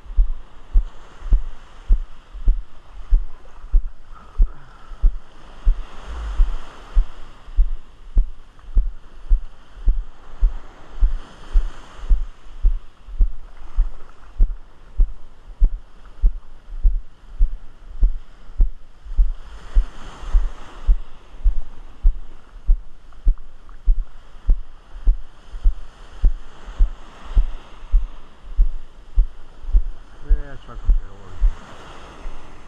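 Steady low thuds about twice a second, the footfalls of someone walking on beach sand, with surf washing in behind and swelling a few times.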